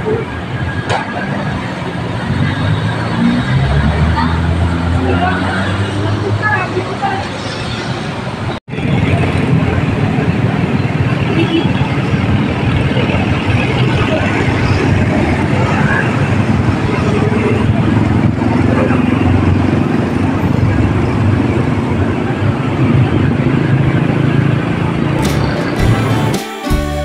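Busy road traffic: vehicle engines running as cars and motorbikes pass close by, with indistinct voices mixed in.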